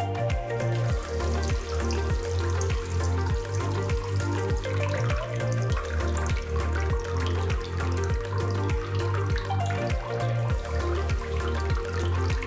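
Background music with a steady beat, over a thin stream of water from a small pump outlet splashing into a shallow pool of water.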